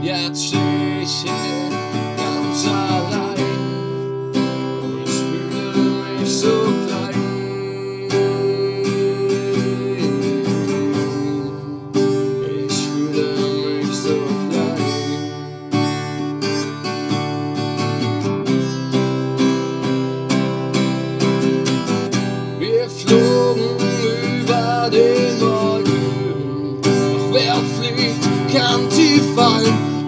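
Acoustic guitar strummed, its chords changing about every four seconds.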